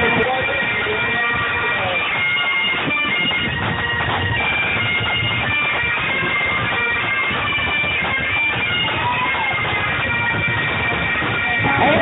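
Bagpipes of a marching pipe band playing a tune over their steady drones.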